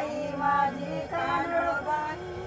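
Women singing an ovi, a traditional grinding song, in held, gliding phrases with short breaks between them.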